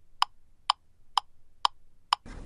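Clock-like ticking sound effect: evenly spaced sharp ticks, about two a second, each with a short pitched ring.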